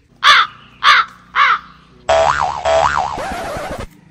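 A crow cawing three times, about half a second apart. It is followed by a sound effect just under two seconds long whose pitch rises and falls twice, and which starts and stops abruptly.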